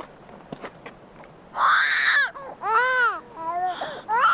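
Baby crying to be fed: three loud cries, each rising and then falling in pitch, the first one raspy, starting about a second and a half in.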